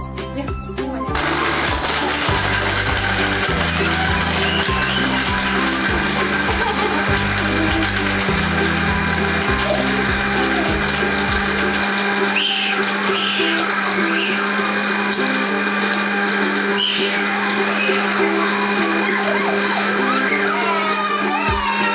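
Small green plastic countertop blender running steadily with a loud, noisy motor whirr and hum as it blends a drink, starting about a second in.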